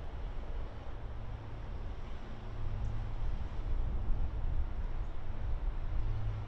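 Steady low engine rumble from distant traffic, with a faint hum and a light hiss over it, swelling a little in the middle.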